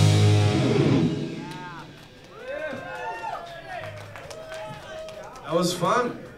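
A rock band's final chord, with electric guitars and drum kit, rings out loud and fades away over the first two seconds. Scattered whoops and shouts from the audience follow, with a louder burst of cheering near the end.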